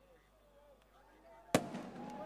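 A faint hush, then a single sharp firework bang about one and a half seconds in, dying away quickly.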